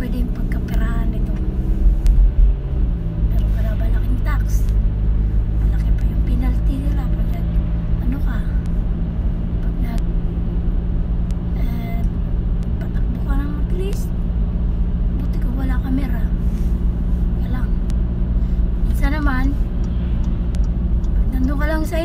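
Car engine and road noise heard from inside the cabin of a moving car: a steady low drone whose engine note shifts about two and a half seconds in, with a woman's voice speaking now and then over it.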